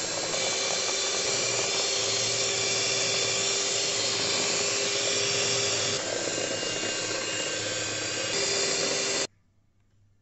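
Electric hand mixer running steadily, its twin beaters whipping a yellow egg batter in a bowl. Its pitch and level drop about six seconds in, rise again a couple of seconds later, and the motor cuts off suddenly near the end.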